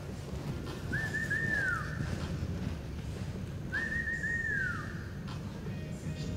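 A person whistling twice, each time a few quick notes and then a held note that falls away at the end: whistles of encouragement for a reining horse and rider in the middle of a run.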